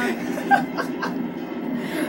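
A football match broadcast playing through a Samsung CL-29Z30PQ CRT television's speaker: steady stadium crowd noise with brief snatches of the commentators' voices and a chuckle.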